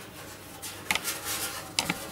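Faint handling noise from a boiler's metal finned heat exchanger being turned over in the hands: a light click about a second in, a soft rustle, and a couple more clicks near the end.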